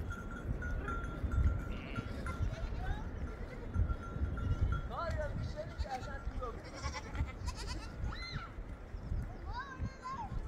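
Sheep and goats bleating: several short, high calls that waver in pitch, starting about five seconds in and coming again near the end, over a steady low rumble.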